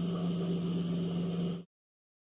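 Steady electric hum of an industrial sewing machine's motor running, which cuts off abruptly to dead silence about one and a half seconds in.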